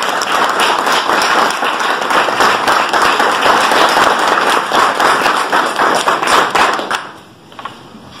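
Audience applauding: dense hand clapping that dies away about seven seconds in.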